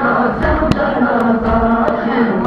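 A group of mourners chanting a Shia noha in unison, with dull thuds about once a second from rhythmic chest-beating (matam).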